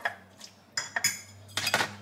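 Metal fork scraping and clinking against a ceramic bowl and a plastic meal tray as food is scooped across: a few short clinks and scrapes with pauses between.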